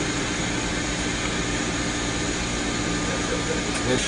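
Whole-body cryotherapy cabin running: a steady rush of liquid-nitrogen-cooled air with a low hum and a faint steady tone under it.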